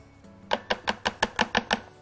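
A quick run of about nine sharp knocks, some six a second, from a pink plastic cup being tapped against a food processor bowl to knock out its contents.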